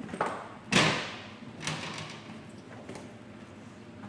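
Two-post vehicle lift being cleared from under a car: a few metal clunks and knocks, the loudest about a second in with a short ring after it.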